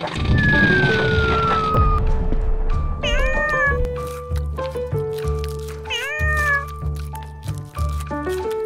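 Wooden toy blocks clattering down onto a wooden floor with a falling whistle, then a cat meowing twice, about three and six seconds in, over background music with a steady beat.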